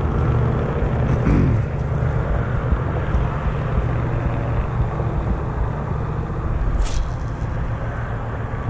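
Steady rumble of road traffic, with one sharp click about seven seconds in.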